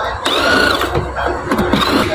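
Cordless drill-driver running in two short bursts, its motor pitch rising and falling, driving screws on an electric scooter's plastic body as it is taken apart for a battery change.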